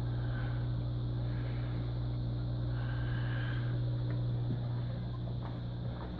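Aquarium air pump humming steadily, with the air stone bubbling in the tank. A fainter higher tone in the hum stops about four and a half seconds in, and the sound eases slightly near the end.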